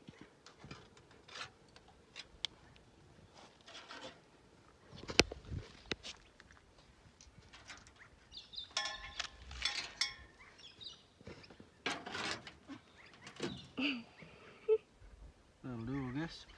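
Scattered knocks and rustles from hands working a purse net at a rabbit hole in a corrugated-iron shed wall, the loudest a single sharp knock about five seconds in. Birds call briefly around the middle.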